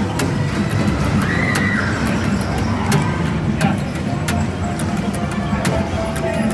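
Indoor arcade din: overlapping electronic game-machine music and sound effects over a low rumble, with many sharp clicks scattered throughout.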